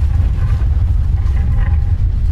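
A steady, deep rumble from an animated intro's sound track, with faint high tones above it.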